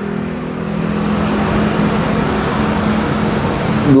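A motor vehicle's engine running steadily nearby: an even low hum with a broad rush of noise over it.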